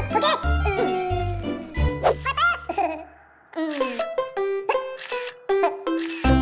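Children's cartoon music with a pulsing bass line, mixed with the characters' high, wordless babbling. The music fades out about three seconds in, then comes back with short, bright notes.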